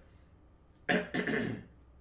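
A man coughs briefly about a second in, a sudden loud cough in two quick bursts.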